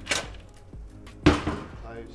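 A metal tray is pushed into a Josper charcoal oven, then the oven's heavy door shuts with a loud clunk about a second and a quarter in, followed closely by a second knock.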